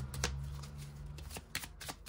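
Oracle Belline cards being shuffled by hand, small packets passed from one hand to the other in an overhand shuffle: a run of soft, irregular riffling clicks as the cards slap and slide against each other.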